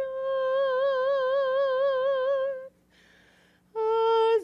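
A woman's solo voice singing unaccompanied, holding one long note with vibrato for about two and a half seconds, then a short breath before the next note begins near the end.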